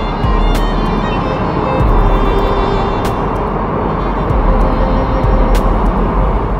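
Electric train running into a station platform, a loud steady rumble with a few sharp clicks, under background music.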